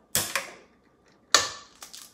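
An egg cracked against the rim of a stainless steel mixing bowl: two light knocks near the start, then one sharp crack about a second and a half in, followed by faint shell clicks.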